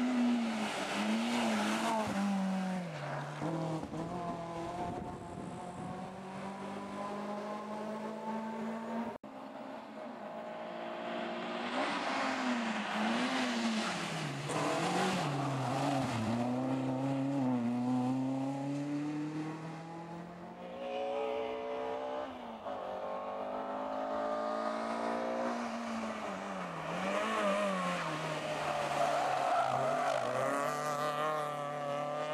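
Renault Clio rally cars cornering hard one after another, their engines revving up and down through gear changes, with some tyre squeal. The sound breaks off abruptly about nine seconds in, then the next car is heard.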